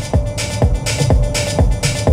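Electronic dance music with a steady, fast beat playing through the KGM Musso EV's factory car stereo, heard inside the cabin. The track is meant to carry heavy deep bass, but the system leaves it out: everything below about 100 Hz is missing.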